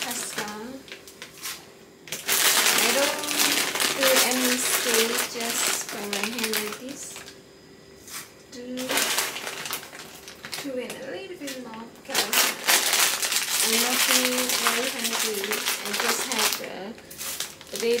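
Plastic packaging crinkling and rustling in long stretches as a bag of dried pasta is handled and opened by hand.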